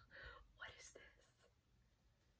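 A woman's faint whisper in the first second or so, then near silence: room tone.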